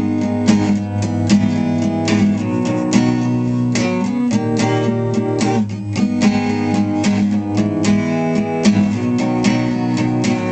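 Acoustic guitar with a capo at the fourth fret, strummed in a steady rhythm of a few strokes a second through changing chords.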